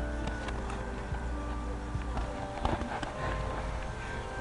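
Boxing gloves thudding and feet shuffling on dry grass during a sparring exchange, with music playing underneath. The loudest cluster of knocks comes a little past halfway, as one boxer goes down.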